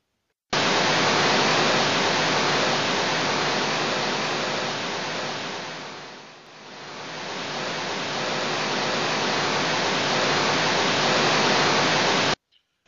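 Loud, steady static-like hiss with no pitch, switched on abruptly about half a second in. It sinks to a low point near the middle and swells back up.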